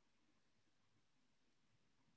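Near silence: a pause in a recorded webinar, with only faint background hiss.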